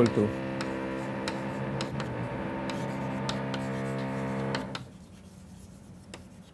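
Chalk tapping and scratching on a blackboard as an equation is written, over a steady pitched hum held for about four and a half seconds that then stops.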